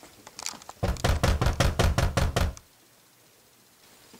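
Rapid, heavy knocking on a door: about a dozen blows in quick succession, roughly seven a second, starting about a second in and stopping abruptly.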